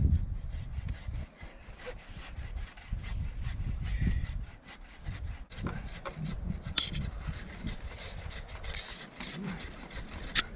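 Repeated rubbing and scraping of rope against a mule's pack saddle and panniers as a load is lashed on, with a few sharper clicks and an uneven low rumble underneath.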